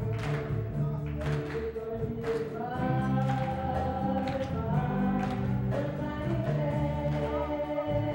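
A woman singing lead into a microphone with a live band, held notes over steady bass and regular drum strikes, with backing voices joining in.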